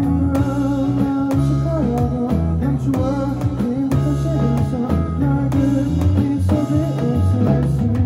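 A small live band playing: strummed acoustic guitar and electric bass guitar over a drum beat struck with sticks on a Roland electronic percussion pad.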